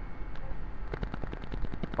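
Rapid, irregular clicking and crackling from the handheld camera's microphone being handled as it pans, over a low steady hum.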